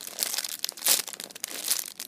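Clear plastic bag crinkling as fingers squeeze the squishy toy sealed inside it; irregular crackles, loudest just under a second in.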